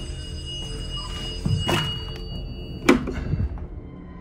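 Dark background music with a steady high tone, broken about three seconds in by a single sharp thunk as the handset of an old rotary telephone is grabbed from its cradle.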